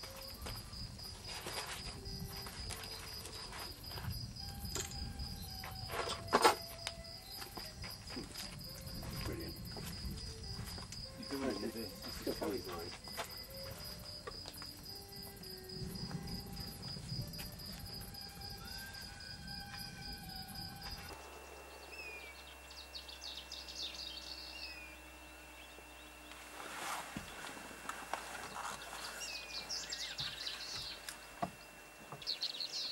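A night insect trilling steadily, a high rapid pulsing, with one sharp knock about six seconds in. The trill cuts off about two-thirds of the way through, and short bird chirps follow.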